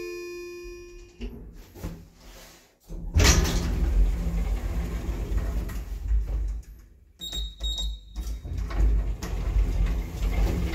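Elevator arrival chime fading out in the first second, then the TKE e-Flex car and landing doors sliding open with a rumbling run from the door operator, starting suddenly about three seconds in. A few short high beeps follow about seven seconds in, then more door rumble.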